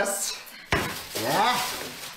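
Groceries being unpacked from a plastic shopping bag: the bag rustling and items clattering against each other and the table, with a sudden knock a little past half a second in. A man's voice joins in the second half.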